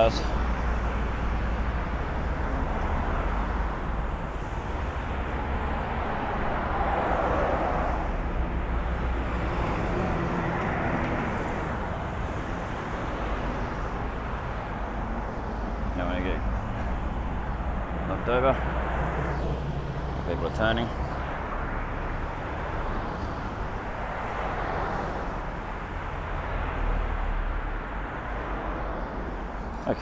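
Road traffic at a busy intersection: cars driving through and turning, a steady mix of engine rumble and tyre noise that swells as vehicles pass close by. A few brief pitched sounds come about halfway through.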